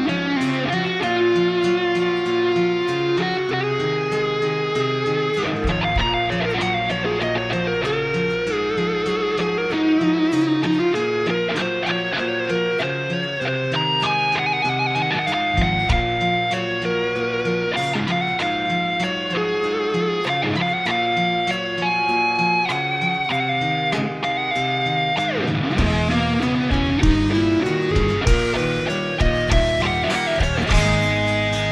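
Live electric guitars playing a slow ballad intro: chords under a lead guitar melody with wavering held notes, and a long upward slide near the end.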